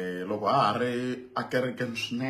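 A man's voice, speaking in a drawn-out, chant-like way with words held on fairly level pitches.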